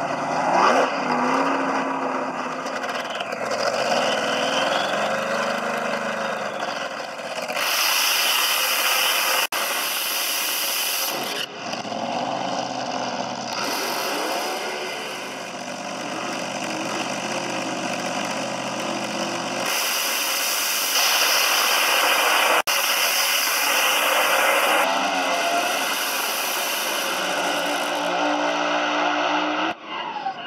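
Top alcohol dragster engine, loud throughout, revving with its pitch rising and falling. Several stretches of full-throttle running start and stop abruptly.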